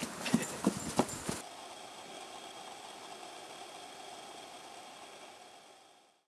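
A person's running footsteps: about five quick steps in the first second and a half, then faint steady background hiss that fades out near the end.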